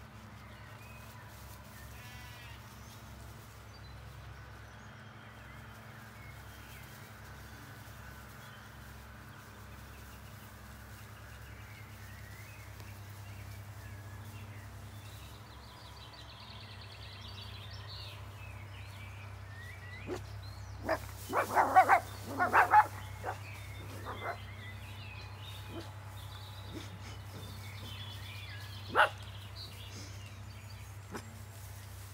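Zwartbles sheep bleating: a quick run of several loud calls about two-thirds of the way through, and one more near the end, over faint birdsong.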